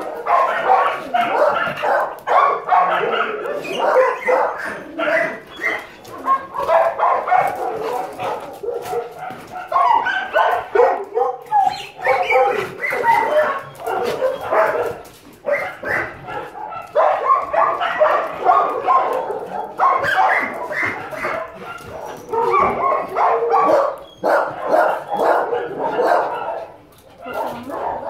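Many shelter dogs barking over one another in a dense, continuous chorus, with only brief lulls.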